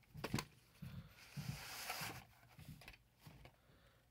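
Faint handling of a VHS cassette and its case: a couple of soft clicks near the start, then a brief rustle as the tape is moved and turned.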